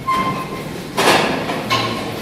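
Lecture-hall bustle as a class breaks up: chairs and desks scraping and knocking, with brief squeaks and a louder clatter about a second in.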